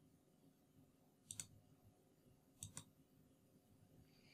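Computer mouse clicking: two quick double clicks, about a second and a half apart, against near silence.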